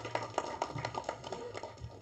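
A faint, quick run of light clicks, about five a second, fading out after a second and a half.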